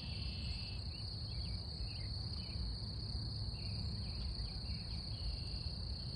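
Meadow ambience: a steady, high-pitched drone of insects such as crickets, with scattered short chirps over a low rumble.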